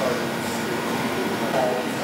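Steady room noise, an even hiss, with a brief voice near the end.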